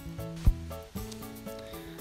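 Background music with held notes, and a single sharp click about half a second in as a micro USB plug is pushed into the socket of a small USB step-up/down converter board.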